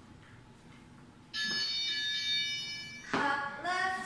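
A single electronic interval-timer tone, high and steady with a sudden start about a second in. It holds for about a second and a half, then fades away.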